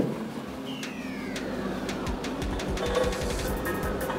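Construction machinery running as a road roller is unloaded from a transport truck: a steady engine and machine hum with a falling whine about a second in, then a run of quick regular clicks near the end.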